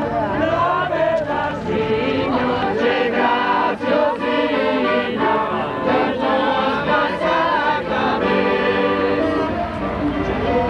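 A group of people singing together, many voices in chorus.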